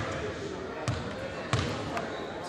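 A basketball bouncing twice on a gym floor, about a second in and again about half a second later, over background voices.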